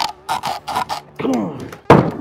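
A piece of red oak pressed and knocked down onto a golf ball set on a styrofoam board, making a quick run of short knocks, then a single hard thump near the end. A short straining grunt comes about a second and a half in.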